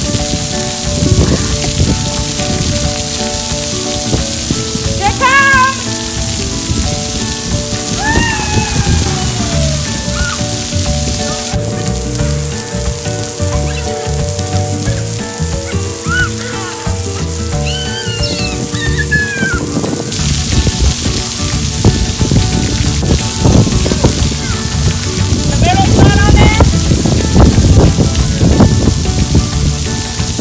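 Splash pad ground jets spraying water that patters down on the wet pad, under background music, with a few short vocal calls over it.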